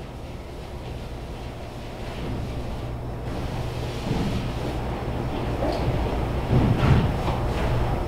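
Chalk drawing on a blackboard in irregular strokes, louder from about halfway through, over a steady low hum from the room's ventilation.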